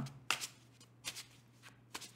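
Tarot cards being shuffled and drawn from the deck: a few short, faint card rustles about a second apart.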